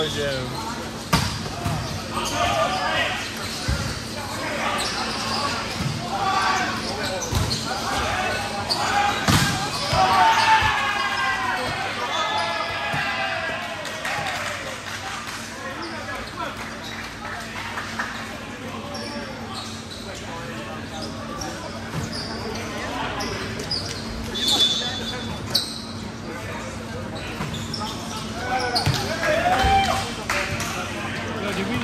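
Indoor volleyball play: sharp smacks of the ball being hit and bouncing on the court, with players shouting and calling out over the echoing hum of a large gym.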